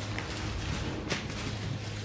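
Quiet room tone in a pause between voices: a steady low hum with a faint click twice.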